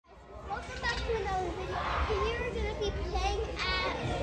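Children's voices shouting and chattering over one another, with a louder high-pitched cry near the end and a steady low rumble underneath.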